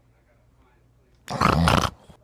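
A man's sudden, loud, rough vocal outburst, about half a second long, a little past the middle, after a quiet start.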